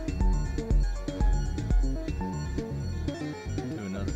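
Eurorack modular synthesizer playing a looping electronic sequence: pitched synth notes over a deep kick drum about twice a second. The kick drops out about halfway through while the synth notes carry on.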